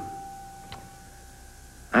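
A faint steady electronic tone holds one pitch and fades away, with a single click a little under a second in. Speech starts at the very end.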